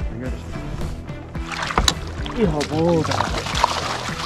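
Background music, with a hooked pike thrashing and splashing at the surface beside the boat from about halfway through as it is brought to the landing net, and a short shout among the splashing.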